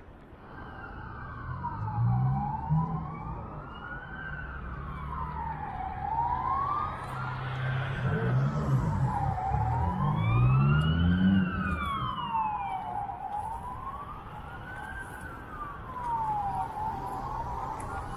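Emergency vehicle siren wailing, its pitch sweeping slowly up and down about once every three seconds. Road traffic rumbles underneath, with engines revving up about two seconds in and again around the middle.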